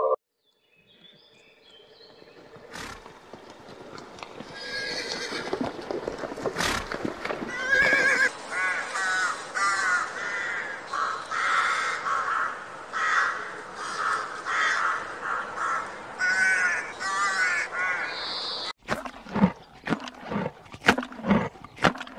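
A colony of corvids calling from their nests: a dense run of short, harsh, repeated caws that overlap one another. It cuts off suddenly near the end and gives way to a series of low, rhythmic thumps.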